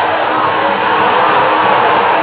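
A football crowd chanting and singing together, a dense, steady mass of voices.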